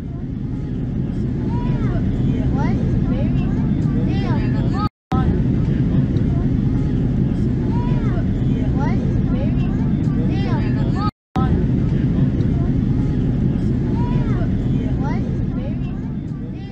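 Steady low drone of an airplane cabin in flight, with indistinct voices talking over it. The sound cuts out abruptly twice, about five and eleven seconds in.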